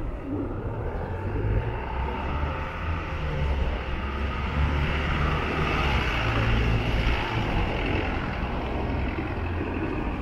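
A passing vehicle's low rumble and hiss, swelling to a peak around the middle and easing off.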